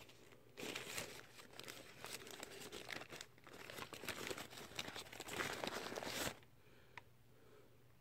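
A small white paper bag crinkling and rustling as it is unfolded and opened by hand, in a run of crackles that stops about six seconds in.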